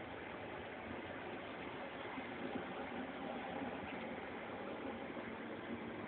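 Steady background noise with no distinct sounds standing out.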